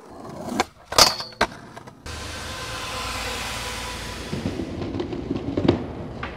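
Skateboard landing on a metal handrail about a second in and sliding along it with a short ringing scrape, then the steady rumble of the wheels rolling on pavement with a few clacks.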